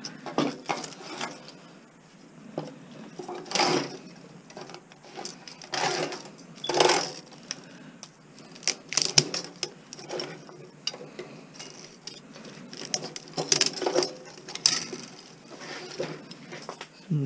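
Steel tools prying and scraping at the stuck steel laminations of a small range hood fan motor's core: irregular metallic clinks and scrapes, with a few sharper knocks spread through, as the laminations resist coming out.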